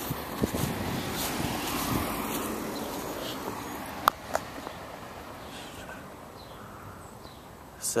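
Car driving along an asphalt street, its tyre and engine noise loudest in the first two seconds and then slowly fading, with two sharp clicks about four seconds in.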